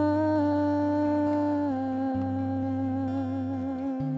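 Slow worship music: a woman's voice holds one long wordless note over a sustained low keyboard chord. The note steps down slightly in pitch partway through, and the chord fades out near the end.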